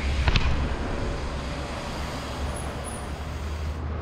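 Bike tyres rolling over concrete paving stones, a steady low rumble, with a sharp knock about a third of a second in.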